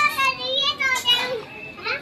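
A young child's high-pitched voice, calling out in a few short wordless phrases with rising and falling pitch.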